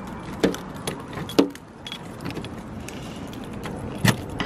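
Keys on a keyring jangling and clicking against a car door as a key is worked in a frozen door lock, with a few sharp clicks in the first second and a half.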